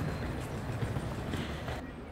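Wheeled suitcases rolling across a tiled floor with walking footsteps: a low rumble with irregular small knocks that stops just before the end.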